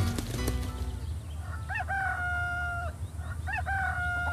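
Rooster crowing twice as a comic sound effect: each crow a short rising-and-falling note and then a long held note, the first about a second and a half in, the second near the end. A low music bed runs underneath.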